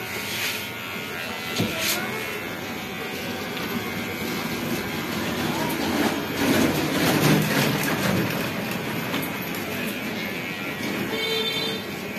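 Cordless electric hair clippers buzzing steadily as they trim a baby's hair, with a louder stretch of mixed noise for a couple of seconds about halfway through.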